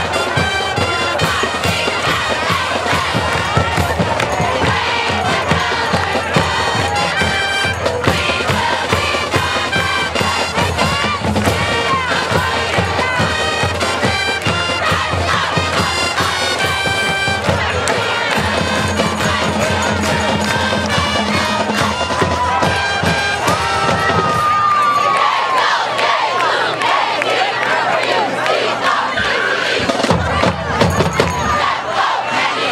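Marching band playing brass and drums, heard over a crowd in the stands. About three quarters of the way through the band's beat drops away, and a crowd cheering and shouting takes over.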